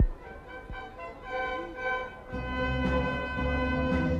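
A live orchestra with violins starts a song's instrumental introduction: a sharp knock at the very start, held notes from about a second in, then lower instruments join and the music grows fuller a little past two seconds.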